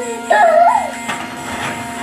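Battery-operated bump-and-go toy excavator playing its built-in electronic tune, a short melodic phrase over steady electronic tones.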